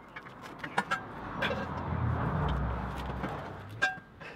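Adjustable wrench clinking against the saw-cut teeth of a steel box-section tube as they are levered over, a few sharp metallic clicks with a brief ring. A low rumble swells and fades through the middle.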